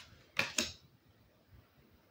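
A thick, smooth tarot card being slid off the top of the deck and laid aside. There is a faint click at the start, then a brief rustle and tap about half a second in.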